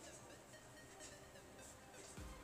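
Near silence, with faint scratching of a ballpoint pen writing on paper.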